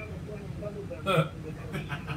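People's voices in a small studio: low, wordless voice sounds over a steady low hum, with one short loud vocal burst about a second in.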